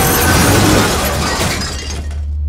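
Dramatised crash of a train smashing into a bus at a railway crossing: a loud, dense smash of metal and breaking glass that dies away near the end.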